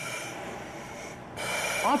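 Breathing through a breathing-apparatus face mask: a steady hiss of air that grows louder and brighter about a second and a half in.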